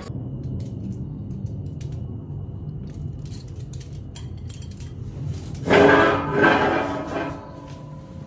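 Knife and fork clinking and scraping on a plate in small, faint ticks over a steady low hum. About six seconds in, a louder pitched sound comes in for about a second and a half.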